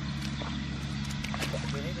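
Steady drone of a hand tractor's engine running, with a few short splashes of steps through shallow water in the mud; a voice speaks near the end.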